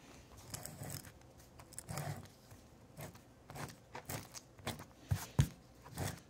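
Correction-tape dispenser being run over squared paper: faint, scattered scratchy rustles and light clicks as the tape is laid down and the roller is lifted and pressed again.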